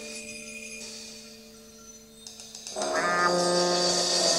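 Live jazz-fusion band music: held notes fade into a quiet spell, light percussion clicks come in, and about three seconds in a louder instrument enters with long sustained notes.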